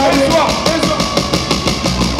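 Loud live music through a PA: a driving drum beat with a man's amplified voice rapping over it.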